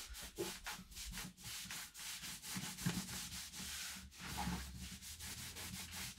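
Cloth rubbing hard over the satin-finished top of a Taylor GS Mini Koa acoustic guitar in quick back-and-forth strokes, several a second, scrubbing built-up grime and sweat off the finish with satin guitar cleaner.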